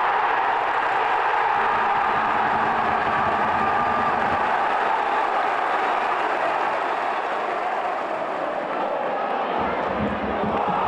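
Football stadium crowd cheering a goal, a sustained loud cheer that eases slightly near the end.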